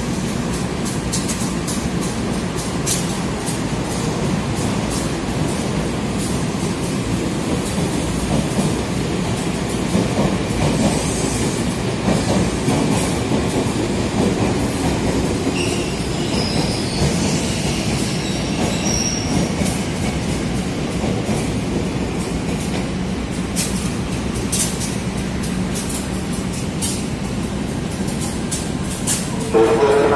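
Electric commuter trains moving along the station tracks: a steady rumble with many short clicks of wheels over the rail joints, and brief high wheel squeals about halfway through.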